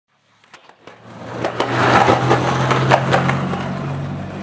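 Skateboard rolling on hard concrete, fading in, with a steady low rumble and a string of sharp clacks from the wheels and board. It cuts off suddenly, as an edited clip.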